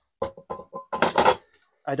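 Stainless steel frying pan clinking and clattering as it is set down in a plywood storage box among other pots and tins, with a short metallic ring between the knocks.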